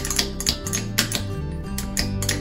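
A wind-up troll toy's clockwork mechanism clicking and its feet tapping as it walks across a wooden tabletop, with irregular sharp clicks. Background music with sustained notes plays throughout and is the more prominent sound.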